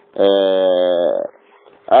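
A man's drawn-out voiced hesitation sound, one held vowel lasting about a second that wavers slightly before it stops, then a short pause.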